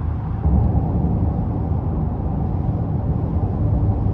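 Steady low road and tyre noise inside the cabin of a 2023 Honda Ridgeline pickup cruising at highway speed.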